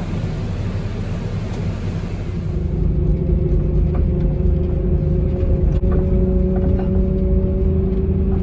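A bus's engine and road rumble heard from inside the cabin: a loud, steady low rumble, with a steady engine hum coming in about three seconds in as the bus travels along.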